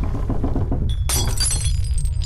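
Dramatised earthquake sound effect: a steady deep rumble, with glass or china shattering and ringing about a second in.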